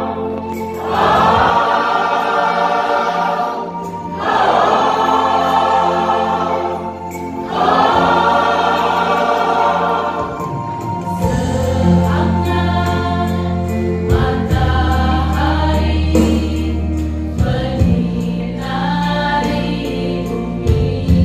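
Church choir singing a sacred piece: three long held phrases, then shorter phrases over a strong, steady low bass part from about halfway.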